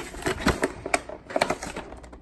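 Cardboard and plastic packaging of a Pokémon card collection box being handled and pulled at to open it, giving a string of irregular clicks and taps.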